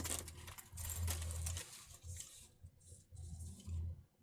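Fabric fanny pack being handled: faint rustling with light clicks and soft thuds as its strap and fittings are pulled and tested, busier in the first half.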